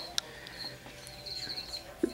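A cricket chirping faintly in short high-pitched trills, with a longer pulsing trill about a second and a half in. A single sharp click comes just after the start.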